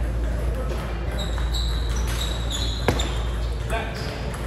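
Table tennis ball struck with a paddle and bouncing on the table: one sharp click about three seconds in, then a few lighter clicks just before the end, over background voices.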